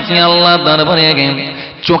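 A man's voice intoning one long held melodic note in the sung style of a Bengali waz sermon. The note steps down in pitch about halfway, then fades, and a new phrase starts just before the end.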